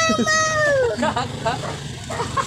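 A toddler's long, high-pitched whining cry, held for about a second and falling in pitch at the end, followed by short broken vocal sounds: a small child protesting at being led through the gate.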